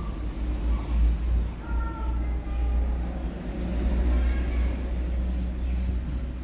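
Low, uneven rumbling from the phone being handled and rubbed against fur and blanket while petting a pair of young otters, with a faint short squeak from the otters about two seconds in.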